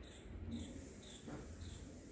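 A run of short, high chirps, about two a second, each falling slightly in pitch, with a faint low rumble underneath.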